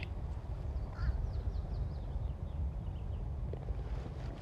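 Outdoor ambience with a steady low wind rumble, over which a bird calls faintly in a quick series of short falling notes during the first half.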